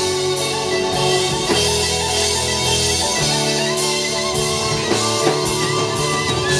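Live band playing an instrumental passage: electric guitar and fiddle over a drum kit with regular cymbal hits.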